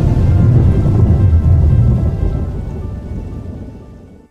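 Deep rolling rumble of a thunder sound effect over a faint sustained music chord, fading away over the last two seconds.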